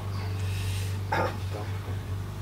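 A steady low hum, with a single short spoken "ja" about a second in.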